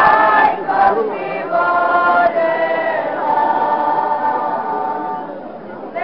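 A folk ensemble singing together unaccompanied, in long held notes, with the last note fading out near the end.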